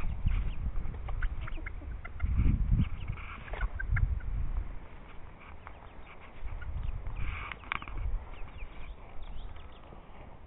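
A flock of chickens clucking, with many short, high peeps scattered throughout, over loud low rumbling on the microphone from a handheld camera on the move.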